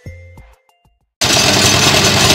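The last chimes and clicks of a short musical jingle die away into a brief silence. Then the loud, steady running of the small stationary engine that drives a water-well drilling rig cuts in suddenly.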